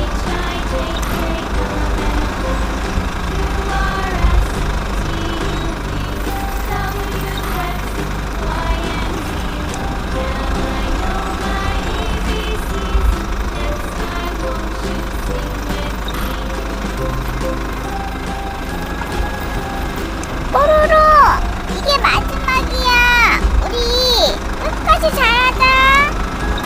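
A low, steady bulldozer engine rumble under background music. About twenty seconds in, high-pitched voice sounds with sliding pitch join it.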